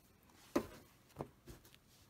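Three faint clicks of handling as the stitched fabric is drawn out from under the sewing machine's presser foot.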